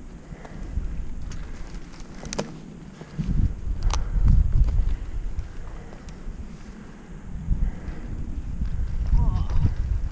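Wind buffeting the microphone of a helmet-mounted camera in low gusts, stronger from about three seconds in, with a few sharp clicks.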